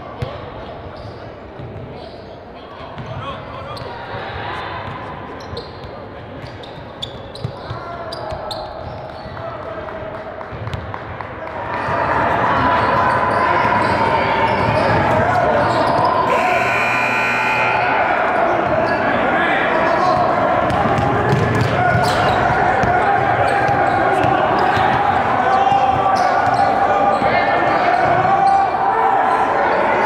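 Basketballs bouncing on a hardwood gym floor with players' voices echoing in a large hall. The sound gets noticeably louder about twelve seconds in.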